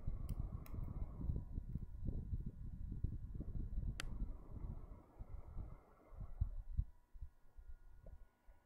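Breath blown in repeated puffs into a smouldering dry-grass tinder nest to coax an ember from charred wood into flame, heard as a low, gusty rumble that eases off after about six seconds. A sharp click sounds about four seconds in.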